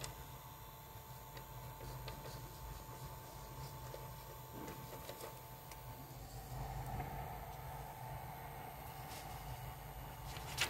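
Steady low hum and mid-pitched whine of a powered, preheated Ender 3's cooling fans; the whine dips slightly in pitch about six seconds in. Faint rustles and clicks of a sheet of paper being slid about on the print bed.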